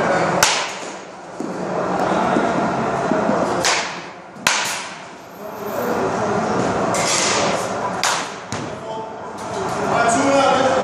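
Baseball bat hitting pitched balls in an indoor batting cage: sharp cracks every few seconds, six in all, some in quick pairs, each with a short echo from the hall.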